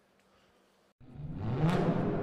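Faint room tone with a low hum, then about a second in an abrupt cut to a loud, swelling outro sting: a rising whoosh that peaks in a sharp drum-like hit and rings on.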